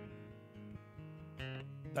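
Acoustic guitar played softly under the pause, ringing chords that change a couple of times.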